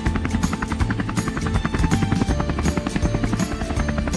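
Background music with a steady beat, over the rapid rotor chop of a small helicopter lifting off and flying away low. The chop is clearest in the first half.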